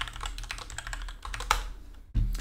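Typing on a computer keyboard: a run of irregular key clicks, with one louder key press about one and a half seconds in.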